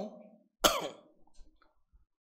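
A man coughing once, a short sharp cough about half a second in, just after his speech trails off.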